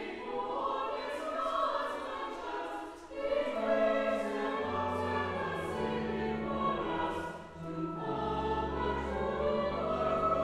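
Mixed church choir singing a carol in parts, the phrases breaking briefly about three seconds in and again near the end. Low held notes come in after the first break and step downward.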